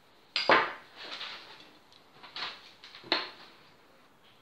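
Kitchen handling clatter: a spatula and a plastic cream cheese tub knocking against a glass mixing bowl. A sharp knock about half a second in is the loudest, followed by lighter knocks and scrapes and another sharp knock a little after three seconds.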